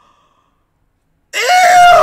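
Near silence for just over a second, then a man's loud shouted "Ew!" of disgust.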